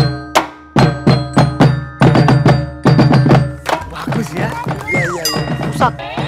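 Marching drum band playing: loud drum strikes in a steady rhythm, about three a second, that stop about three and a half seconds in.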